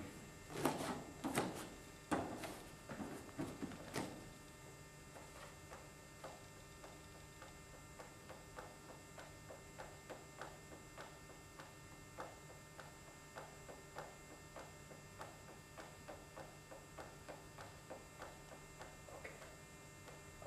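Faint steady electrical hum. In the first few seconds there are louder rustles and knocks of a person moving onto a vinyl gym mat, then faint ticks about twice a second.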